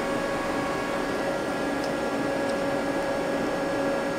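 Steady hum of cooling fans and electrics with a faint constant tone, and two faint ticks near the middle.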